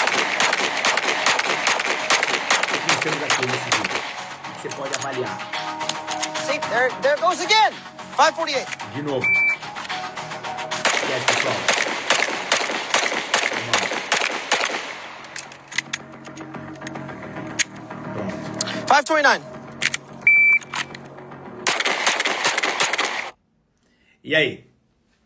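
Music playing over pistol shots from a Smith & Wesson M&P 2.0 Compact fired in fast strings, with a man's voice now and then. The sound cuts off suddenly near the end.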